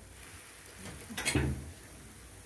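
Faint background noise with one short, dull thump a little past the middle.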